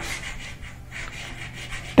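Chalk writing on a blackboard: a run of short, scratchy strokes as letters are formed.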